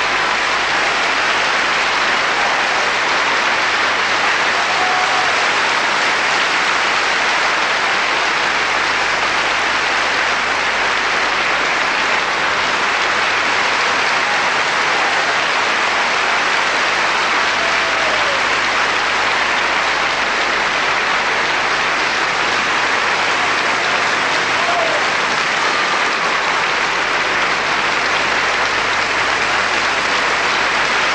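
Large theatre audience applauding steadily, a continuous ovation that does not let up.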